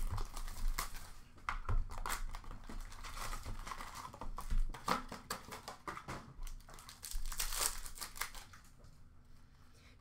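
Packaging of a hobby box of hockey trading cards being torn open by hand: wrapper and cardboard crinkling and tearing in quick rustling strokes, easing off near the end.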